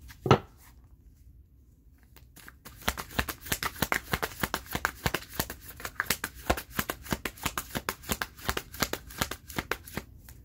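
A single sharp knock near the start, then, from about three seconds in, a deck of tarot cards being shuffled by hand: a quick, uneven run of card clicks and flutters, several a second.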